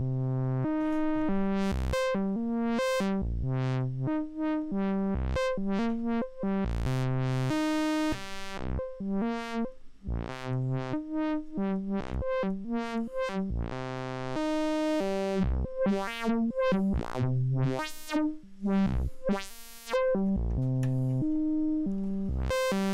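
Sequenced synthesizer notes, a repeating pitched line, run through a Three Tom Modular Steve's MS-22 filter, a Korg MS-20-style filter, while its knobs are turned by hand. The tone swells brighter and then darker several times, most brightly about a third of the way in and again just after the middle.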